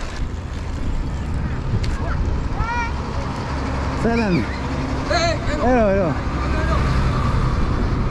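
Steady low rumble of street traffic, a truck's engine among it, heard from a moving trike, with short voices calling out a few times in the middle.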